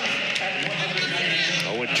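Broadcast commentary: a man speaking over a steady background hiss.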